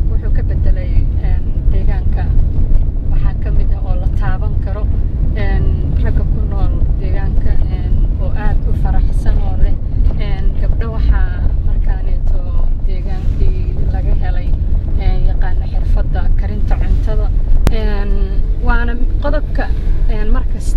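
Steady low rumble of a Toyota car's engine and tyres heard inside the cabin while it is being driven, with a voice speaking over it for most of the time.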